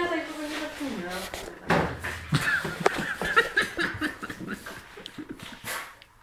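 A person's voice with laughter, making no clear words, while a boerboel puppy and a French bulldog play.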